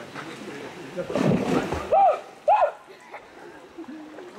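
Swimmers splashing in a stream pool: a burst of splashing water about a second in, followed by two short shouted calls, over a steady background hiss.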